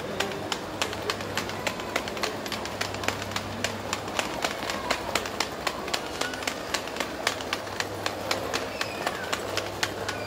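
Footsteps clicking on a hard tiled floor at a steady walking pace, over a steady low hum and background bustle.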